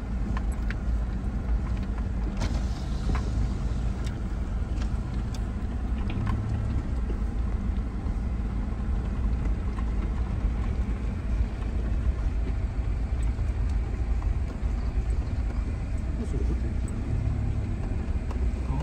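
A motor vehicle on the move: a steady low rumble, with a few light knocks or rattles in the first few seconds.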